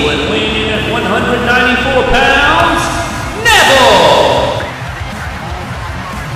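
A wrestler's entrance theme music with vocals over it. It is loudest at a swooping vocal cry about three and a half seconds in, then drops lower.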